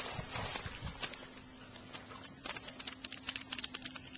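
Water splashing as a dog and a person wade out of a lake onto the bank, followed about halfway through by a quick, irregular run of light clicks and taps.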